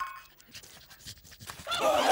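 A pack of cartoon hounds and two men break into a loud chorus of yelping and screaming near the end, after a quiet stretch that opens with a brief tone.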